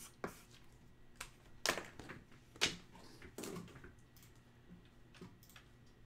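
Scattered sharp clicks and taps of a computer keyboard and mouse in use, irregular rather than steady typing, with the loudest clicks about one and a half and two and a half seconds in.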